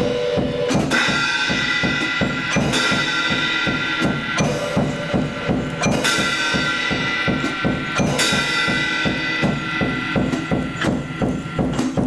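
Solo percussionist playing drums with sticks in a fast, even run of strokes, about four or five a second. Ringing metallic crashes, likely cymbals, cut in roughly every one and a half to two seconds and ring on over the drumming.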